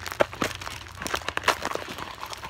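Footsteps on a dirt and gravel trail: a run of irregular short scrapes and clicks.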